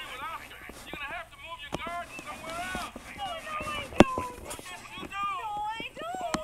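Voices from a children's TV show playing through a tablet's small speaker, thin-sounding and cut off in the highs. A single sharp click about four seconds in.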